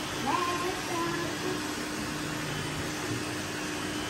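Steady hum of several robot vacuum cleaners running on a mattress, with a brief rising tone a fraction of a second in.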